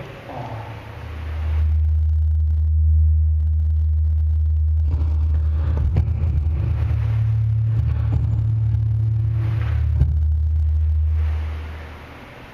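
A loud, steady low rumble or drone that swells in over about a second and fades out shortly before the end, with a second, slightly higher low tone joining about halfway through.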